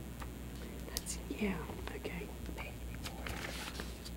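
A faint whispered exchange between two people close to a microphone, with a few light clicks of paper handling over a steady low room hum.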